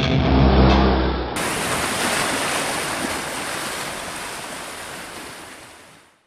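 Trailer music ends about a second in and gives way to a steady rush of sea surf, which fades out toward the end.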